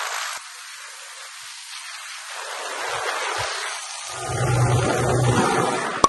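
Wind rushing over the microphone of a camera carried on a moving motorcycle, steady at first and louder in the last two seconds, with a low hum, likely from the motorcycle, underneath in that louder stretch.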